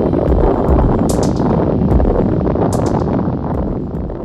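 Explosion: a loud, deep rumble with crackling, dying away near the end.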